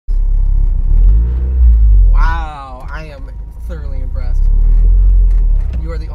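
Deep engine rumble of a turbocharged 1.8-litre inline-four in a 1995 Mazda Miata, heard from inside the cabin. A voice talks over it in the middle, while the rumble eases for a couple of seconds.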